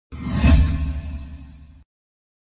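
Intro sound effect: a whoosh over a deep bass boom. It swells to a peak about half a second in, fades, and cuts off just under two seconds in.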